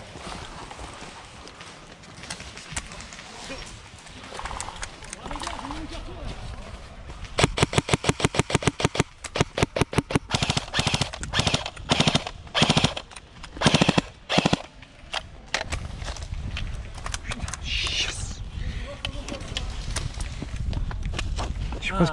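Airsoft gun firing in rapid automatic bursts: a long run of quick sharp clicks about a third of the way in, then three shorter bursts.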